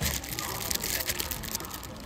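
Plastic film wrapping on a sleeve of paper cups crinkling as the pack is handled and turned in the hand.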